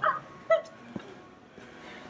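A toddler's two short high-pitched vocal sounds, one right at the start and one about half a second in.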